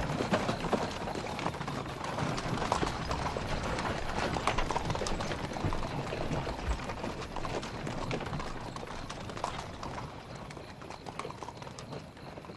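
Horse hooves clopping at a walk on a muddy road, an uneven run of knocks that grows fainter toward the end.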